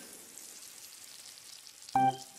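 Garden hose spraying water: a soft, steady hiss. A brief pitched sound starts right at the very end.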